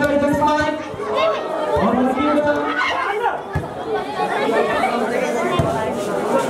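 Spectators' chatter and shouting, many voices overlapping at once, with a couple of drawn-out calls. A few short sharp knocks sound through it, one about halfway through and one near the end.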